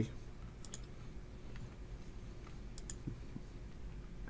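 Faint computer mouse clicks over quiet room tone: two quick press-and-release pairs about two seconds apart, clicking the randomize button on a web page.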